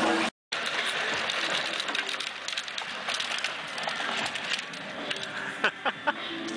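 Outdoor street ambience with scattered light clicks and a few sharper knocks near the end. The sound cuts out completely for a moment just after the start.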